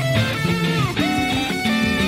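Electric guitar rock playing: a Fender Telecaster plays a lead line with bent and sliding notes over a second guitar part and a Fender Jazz Bass line, through amp-simulator tones.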